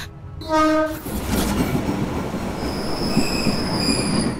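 Train horn giving one short blast, followed by the rumble of a passenger train running, with a high-pitched wheel squeal joining in from about halfway through.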